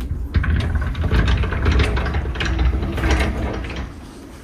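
Old sliding front door of a house, framed in metal and glass, dragged open along its track, a continuous rattling rumble full of small clicks that lasts about three and a half seconds.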